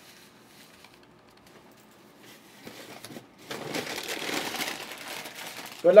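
Rustling, crinkling handling noise that starts after about two seconds of quiet and grows louder in the second half.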